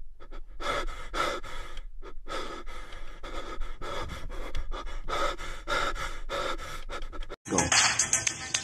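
A person panting heavily, with quick, even breaths about two to three a second, stopping suddenly near the end.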